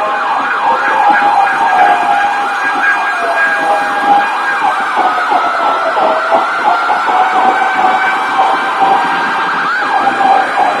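Several emergency-vehicle sirens sounding over one another, their pitch sweeping quickly up and down, over a steady hum of road traffic.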